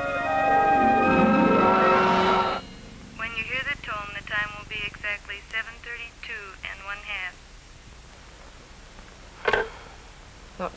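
Orchestral film-score music swells and cuts off about two and a half seconds in. Then a thin, tinny voice chatters over a telephone earpiece for about four seconds.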